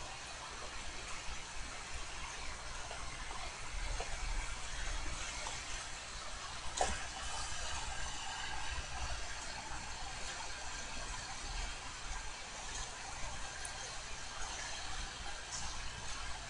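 Low, steady room tone: an even hiss with a low hum underneath, and one faint click about seven seconds in.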